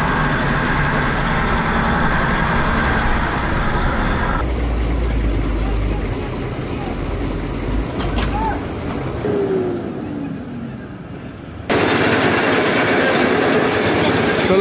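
Vehicle engines running with road noise, heard in a few short clips that cut abruptly from one to the next.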